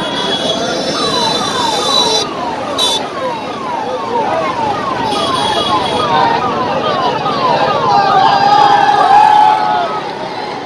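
A siren sweeping down in pitch over and over, about twice a second, above the voices of a crowd.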